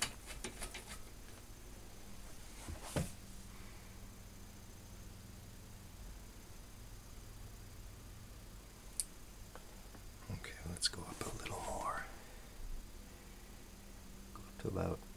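Faint steady mains hum with scattered clicks and crackles from a 1940s Sentinel 400TV tube television warming up on reduced line voltage. The crackling in its speaker is an early sign of life from the set.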